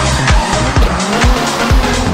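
A Ford Fiesta rally car's engine revving with its tyres squealing as it slides on a concrete floor, mixed with electronic music that has a steady thumping beat about twice a second.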